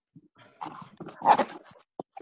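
A dog's short whine, with a few fainter sounds before it and one louder cry a little past a second in, heard over a video call's audio.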